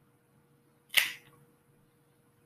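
A single sharp snap of a cigar cutter clipping the cap off a cigar, about a second in.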